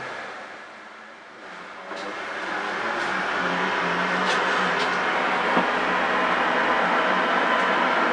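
Static and hiss from a shortwave receiver's speaker on a 10 m channel with no readable signal. It is lower for the first second and a half, then rises to a steady hiss, with a few faint clicks.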